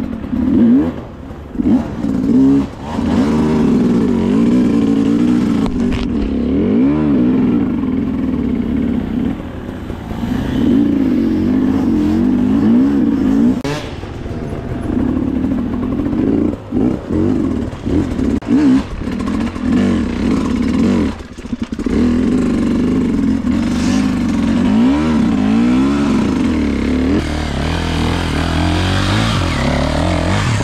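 Enduro dirt bike engine revving up and down on a steep rocky climb, its pitch rising and falling with each burst of throttle and dropping briefly where the throttle is shut, with scattered knocks. Near the end another bike's engine revs hard as its rear wheel spins in the dirt.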